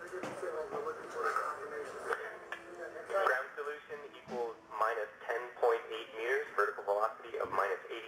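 Speech only: voices talking over a thin, radio-like mission-control intercom loop.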